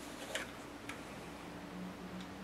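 Quiet room tone with a faint steady hum and two small clicks about half a second apart in the first second.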